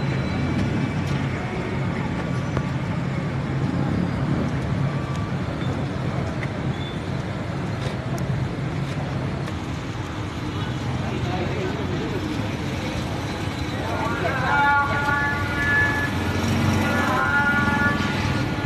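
Street noise: steady road traffic with voices in the background. Pitched tones, likely vehicle horns, sound repeatedly in the last few seconds.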